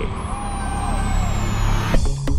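A transition sound effect added in editing: a steady low rumble with a thin high tone gliding slowly downward, cutting off abruptly as the music starts.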